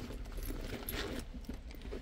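A wallet being pulled out of a handbag: faint rustling, with light metallic clinks from the bag's metal hardware.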